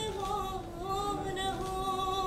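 A woman singing, holding long drawn-out notes; the pitch steps down a little near the start and then holds.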